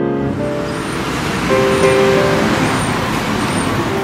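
Street traffic noise from passing cars, a steady wash of sound, with a few faint held piano notes underneath.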